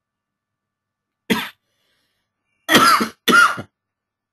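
A person coughing: one short cough about a second in, then two more close together near the end.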